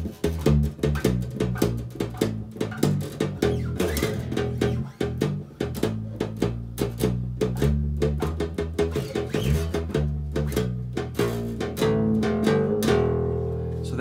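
Hollow-body electric bass guitar playing the E blues scale (E, G, A, B flat, B, D) with each note plucked twice in a swing feel, giving a skippy rhythm, and ending on a longer held note near the end.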